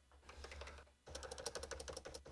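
Computer keyboard keys being pressed while editing code: a few soft clicks, then a fast run of key clicks from about a second in.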